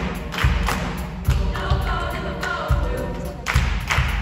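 Mixed choir singing with hand claps and low thumps falling together roughly once a second as a beat under the voices.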